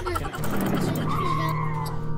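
Driving-game car braking hard to a stop: tyres skid with a falling squeal over a steady engine hum. A child laughs near the end.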